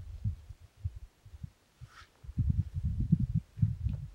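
Wind buffeting the microphone in low, irregular gusts, growing stronger and more constant in the second half.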